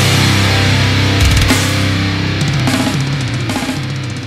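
Heavy rock music with a drum kit and guitar, fading out over the last couple of seconds.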